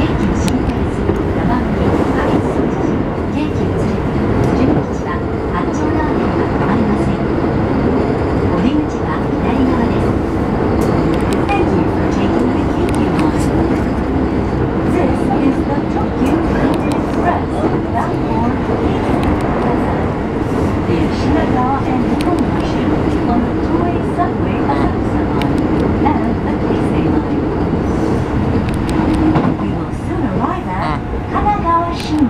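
Interior running noise of a Keisei 3000-series electric train at speed: a loud, steady rumble of wheels on rail and running gear, heard from inside the passenger car.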